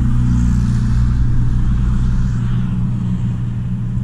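Small car's engine running in a steady low hum, heard from inside the cabin while the car pulls into a parking spot.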